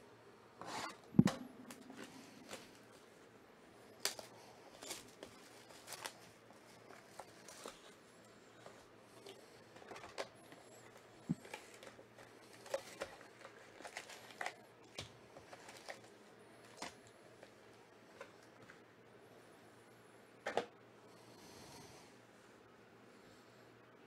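A sealed trading-card hobby box being cut open and unpacked by hand: a sharp knock about a second in, then scattered light taps, scrapes and crinkles of cardboard and foil card packs being lifted out and set down.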